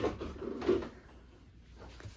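A man's low voice: two short sounds within the first second, then quiet small-room tone.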